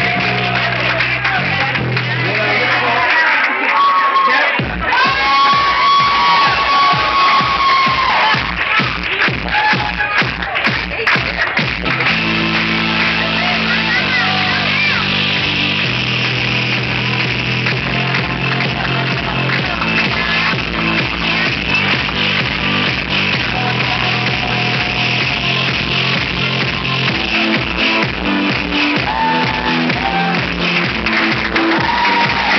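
Dance music playing over the sound system, its steady beat kicking in about five seconds in, with crowd voices underneath.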